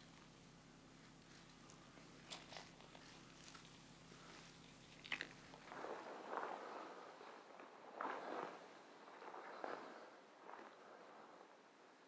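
Footsteps crunching through frosty heather and undergrowth, irregular steps roughly once a second, starting about halfway. Before that, near quiet with a few faint snaps.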